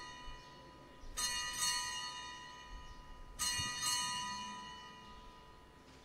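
Altar bells rung at the elevation of the chalice after the consecration. Two rings come about a second and three and a half seconds in, each made of two quick strikes about half a second apart, and each rings on and fades away.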